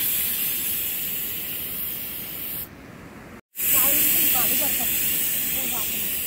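Pressure cooker whistling: steam hissing loudly from the weight valve as the dal inside reaches pressure. Two long hisses, each starting strong and slowly fading, with a short break just past halfway.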